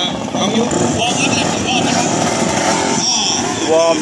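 Several 150 cc racing motorcycles, a mix of two-stroke and four-stroke engines, running together on the starting grid, with bikes pulling away for a warm-up lap near the end.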